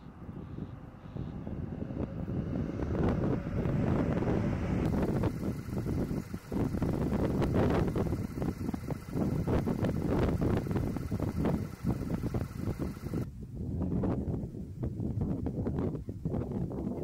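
Wind buffeting the camera microphone: a low, uneven noise that swells and drops in gusts, building about two seconds in.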